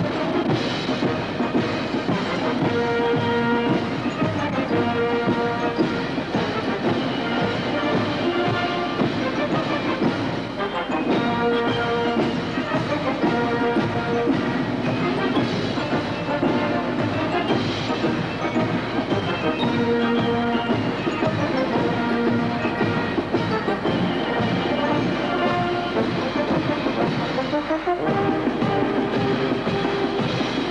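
Military brass band with drums playing live: held brass chords that change every second or two over a steady drum rhythm.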